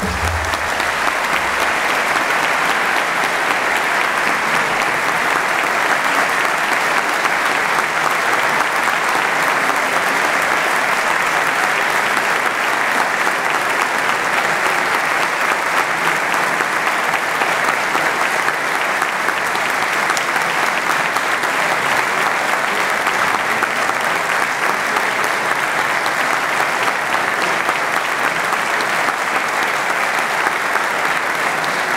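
Audience applauding: dense, even clapping held at a steady level.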